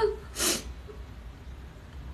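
A person's single short breath noise, a brief puff of air about half a second in, followed by quiet room tone with a faint low hum.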